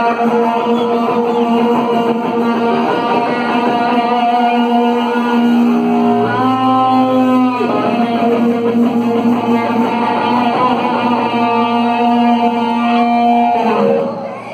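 Live rock band playing with electric guitar to the fore: long held notes, one of them sliding down in pitch about halfway through.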